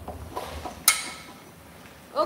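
Light knocks of handling and footsteps, then about a second in a single sharp metallic clank with a short ringing tail as a thin metal sample plate is picked up and handled.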